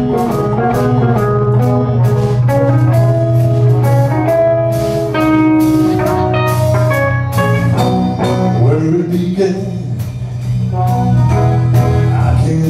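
Live band playing an instrumental passage of a pop-rock song, with drum kit, a steady bass line and guitar, and regular drum hits keeping the beat.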